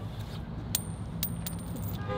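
A tossed metal coin striking hard ground: a sharp metallic ting about three-quarters of a second in, then two more ringing bounces within the next second as it settles.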